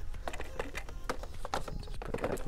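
Cardboard-and-plastic action figure boxes handled on a store peg hook: a run of small irregular clicks and crackles as the packaging is gripped and shifted.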